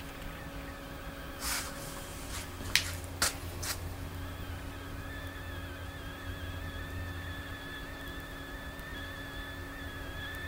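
Steady low electrical hum, with a few faint clicks early on and a faint wavering high tone from about halfway through.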